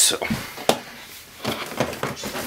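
Cardboard model box being handled as its lid is worked off: a few sharp knocks and scuffs of cardboard.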